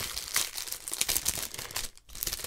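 Clear plastic wrap crinkling and crackling as it is pulled open by hand, a rapid, irregular run of small crackles.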